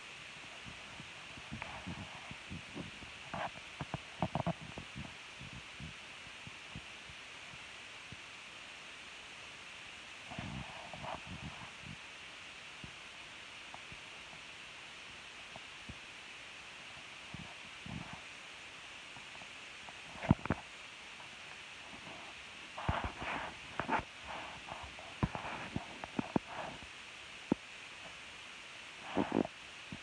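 Steady hiss with scattered knocks, scrapes and low rubbing: handling noise from a recording device moved about close against cloth and small objects. The knocks come in irregular clusters, the busiest a few seconds from the end.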